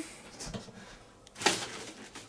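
Packaging being handled: soft low handling noise, with one brief rustle about one and a half seconds in.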